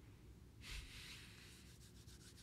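Near silence: room tone, with a faint brief hiss a little over half a second in.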